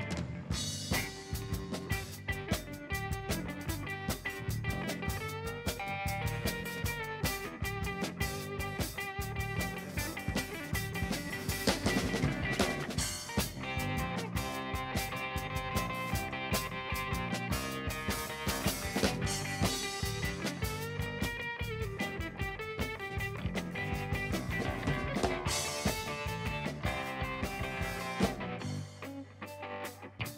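Live blues band playing an instrumental break: hollow-body electric guitar lead over a drum kit and electric bass, with no singing. The band drops out briefly near the end.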